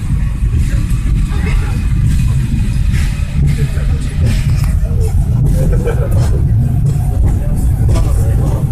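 Peak Tram funicular car running along its track, heard from inside the carriage as a loud, steady low rumble, with passengers' voices faintly over it.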